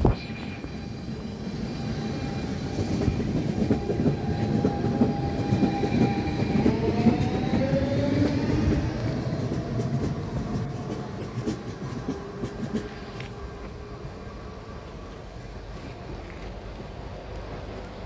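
A DSB S-train electric multiple unit (Siemens/Alstom-built) pulls away from the platform: a rising whine as it accelerates over steady wheel-on-rail noise. It is loudest about halfway through, then fades as the train goes off into the distance.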